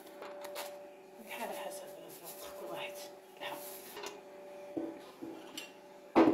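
Light clinks and knocks of kitchen containers being handled on a countertop, a few sharp clicks among them, over a faint steady hum.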